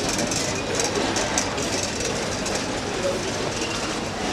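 Wire shopping trolley rolling and rattling over a shop floor, in the steady hubbub of a busy store.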